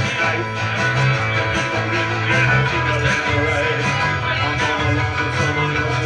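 A small live band playing an instrumental passage of a song, led by guitars strummed in a steady rhythm over a bass line.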